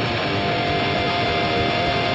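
Distorted electric guitar in a raw hardcore punk recording, playing without bass or kick drum, with one note held from about half a second in.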